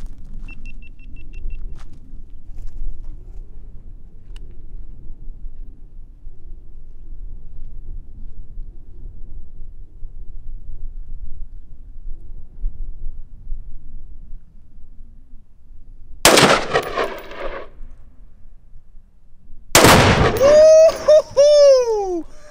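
Two loud blasts about three and a half seconds apart, near the end: rifle fire setting off an exploding-powder target, each blast cut off after about a second.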